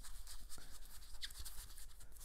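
Faint, uneven scratchy brushing of an ink blending tool rubbed along the edges of cardstock, applying distress ink.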